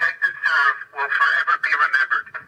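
A voice transmitting over a police radio, heard through the patrol car's radio speaker, thin and narrow in tone, talking in short phrases.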